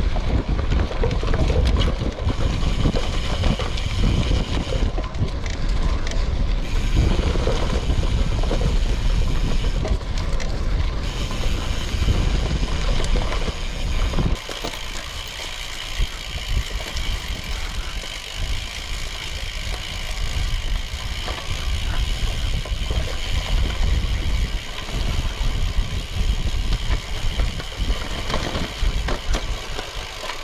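Carbon gravel bike ridden over dirt forest singletrack: tyres rolling over dirt, leaves and roots, with the bike rattling and wind rushing on the microphone. The heavy low rumble drops off suddenly about halfway through, leaving a quieter rolling noise.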